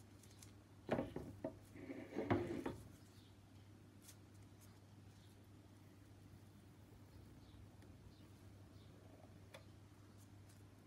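Short handling noises: a few knocks and a rustle of plastic sheeting as a wet painted canvas is turned on a plastic-covered table, about one to three seconds in. The rest is quiet apart from a low steady hum.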